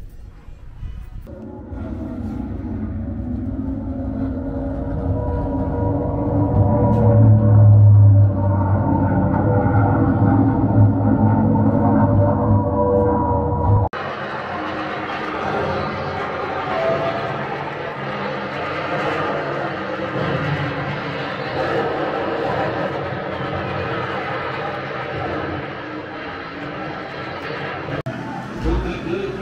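Recorded exhibit soundtrack playing over loudspeakers. The first half is a low rumble with steady tones. About halfway it changes abruptly to a fuller, brighter mix with music.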